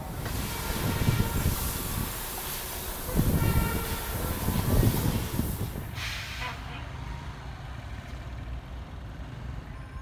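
Street traffic noise: a loud passing rush with heavy low rumbling for the first six seconds, easing into a quieter, steady hum of traffic.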